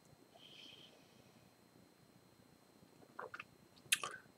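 Near silence: room tone, broken about three seconds in by a faint spoken syllable and, just before the end, one short sharp click.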